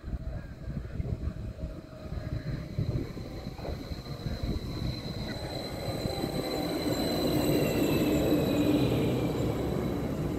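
nordbahn Stadler FLIRT electric multiple unit pulling into the platform and slowing: a rumble of wheels on the track with a high whine that falls slightly in pitch. It grows louder as the train draws alongside and is loudest near the end.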